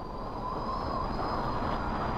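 Intro sound effect: a rushing, jet-like swell that grows louder through the first second and then holds steady, with a thin high whine running over it, building up toward a hit.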